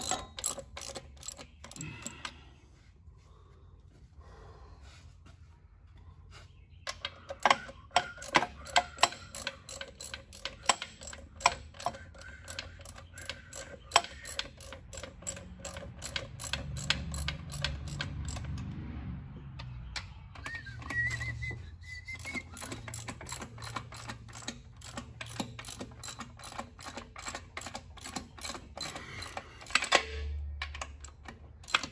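Hand ratchet clicking in quick runs as it turns the bolts fastening a Mopar A833 four-speed transmission to the bellhousing; the clicking starts a few seconds in, after a quieter stretch.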